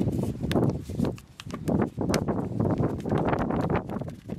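A thin black plastic seedling pot being squeezed and flexed by hand, crackling and rustling in irregular bursts, as the soil root ball of a cucumber seedling is loosened for transplanting.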